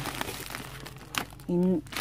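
Plastic snack bag crinkling as it is handled and lifted from a cardboard box, with a sharp crackle about a second in.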